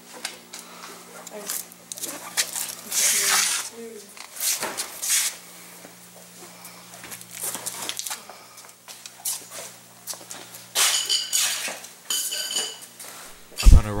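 Clatter and rustling of objects being handled and knocked about, with a couple of ringing metallic clinks near the end, over a faint steady hum.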